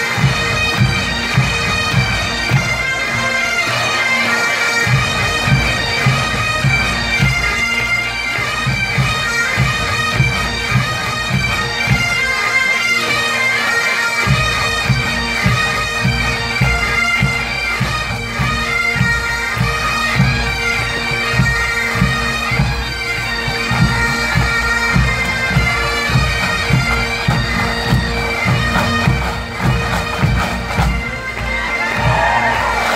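Massed Highland bagpipes playing a tune over their steady drones, with pipe band drums beating a marching rhythm. The drums drop out briefly twice.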